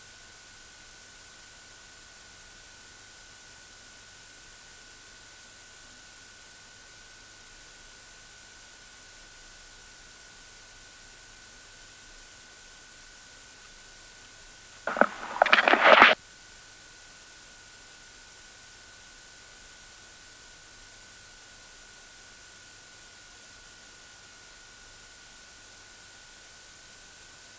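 Steady hiss on the cockpit audio feed with a faint constant high tone, with no engine sound coming through. About fifteen seconds in, a loud crackly burst lasts about a second and then stops.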